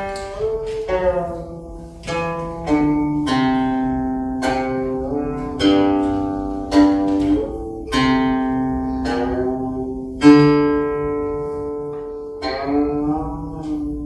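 Guqin, the seven-string Chinese zither, played solo: plucked notes ring out one after another and slowly fade, some sliding in pitch while still sounding, with the strongest pluck about ten seconds in.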